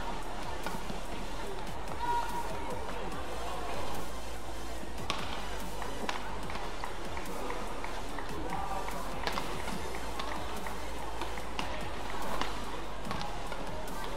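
Background music over a badminton doubles rally, with a string of sharp clicks from rackets hitting the shuttlecock.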